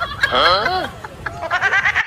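A high-pitched cartoon character's voice giving a warbling, wavering cry in the first second, then a quick stuttering run of short sounds near the end.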